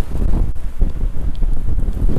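Strong gusty wind, in gusts of 50 to 70 mph, buffeting the camera microphone: a loud, low, uneven rush that swells and dips from moment to moment.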